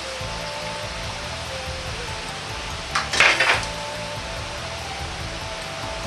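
A perforated metal strainer ladle clinking against a wok in a short run of sharp knocks about three seconds in, as fried nuggets are scooped out of the oil. Soft background music plays underneath.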